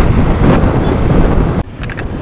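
Wind rushing over the microphone of a camera on a moving scooter, loud and steady, with road noise underneath; it drops off suddenly near the end.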